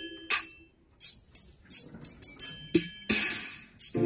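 Roland E-09 keyboard playing an itende gospel instrumental. The held chords stop just after the start, leaving a brief near-silent gap and a few sparse drum hits with a cymbal-like crash about three seconds in, before the full chords and bass come back in at the end.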